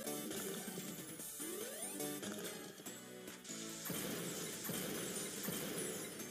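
Online slot game audio from Sweet Bonanza 1000: bright game music with clinking chime effects as winning candy symbols pop and tumble. Two rising sweeps come in the first two seconds, and the sound gets fuller about four seconds in.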